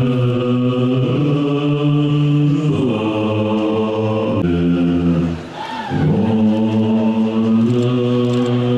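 A group of Tibetan Buddhist monks chanting together in low voices, holding long notes that shift pitch every second or two, with a brief break about five and a half seconds in.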